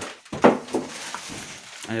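Shopping being handled and unpacked from plastic bags, with one sharp knock about half a second in.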